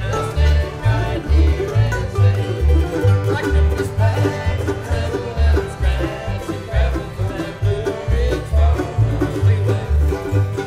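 Bluegrass band playing, with banjo and guitar picking over a steady alternating bass line of about two notes a second.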